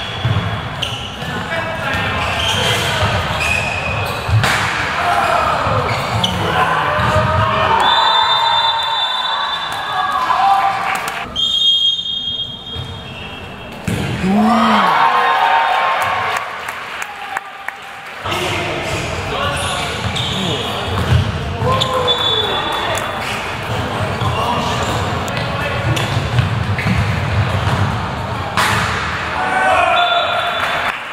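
Indoor handball game: the ball bouncing on the court amid players' and spectators' shouts, with a steady high referee's whistle blown a few times, once about eight seconds in and again about twelve seconds in.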